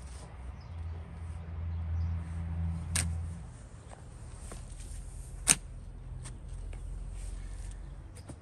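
A steel shovel digging into wet garden soil, with two sharp strikes of the blade about three and five and a half seconds in, the second the loudest, over a low rumble.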